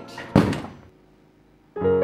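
A single heavy thump, then near silence. Near the end, a sustained piano chord begins as background music.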